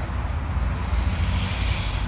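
A loud, steady mechanical rumble with a rushing hiss over it, strongest in the deep bass, loud enough to halt the talk.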